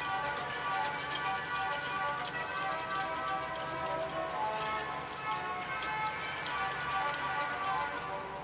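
Rieger pipe organ playing a quick passage of notes on a single stop, demonstrating how the pipes of this register speak, with frequent light clicks from the key action.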